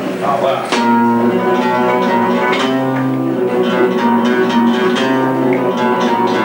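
Flamenco guitar playing a seguiriya: plucked single notes and chords ringing over a held low bass note.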